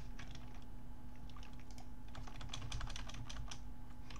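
Computer keyboard typing: a few scattered keystrokes, then a quick run of keystrokes about two seconds in, over a faint steady electrical hum.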